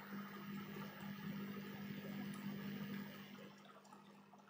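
Faint steady background hum with low hiss. It cuts out abruptly about three and a half seconds in.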